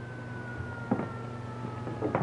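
A siren wailing at a distance, its pitch slowly falling, typical of a 1930s police car siren, with a single thump about a second in. A steady low hum runs underneath.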